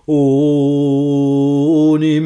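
Unaccompanied male folk singer's voice holding one long, steady note of a Scots ballad, coming in just after a breath, with a slight lift in pitch near the end.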